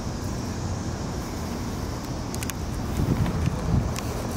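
Low, steady outdoor rumble of a vehicle with wind on the microphone, a little louder about three seconds in.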